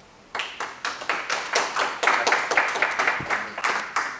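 A small seated audience clapping in welcome. The applause starts about a third of a second in and dies away near the end.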